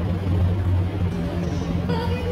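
A steady low hum with an even background noise, with no distinct event standing out.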